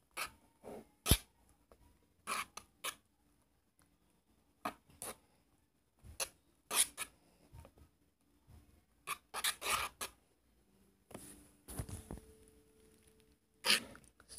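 A mixing tool scraping and knocking against a plastic bowl while glue and shaving cream are stirred together, in irregular short strokes with pauses between them.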